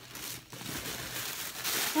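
Packaging rustling and crinkling as a mystery box's contents are handled, growing louder near the end.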